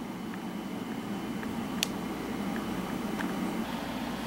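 Room tone: a steady low background hum with a few faint clicks, one a little sharper just under two seconds in.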